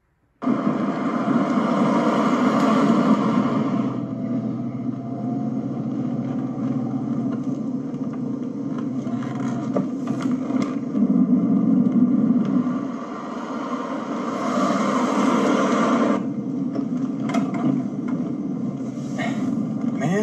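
Car driving noise heard from inside the cabin: a steady engine and road rumble that cuts in suddenly about half a second in, with louder rushing surges in the first few seconds and again around fifteen seconds in. It is heard played back through a TV speaker.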